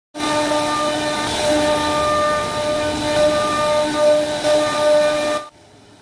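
CNC router spindle carving a wooden panel: a steady high-pitched whine over the hiss of the bit cutting wood. It cuts off suddenly near the end.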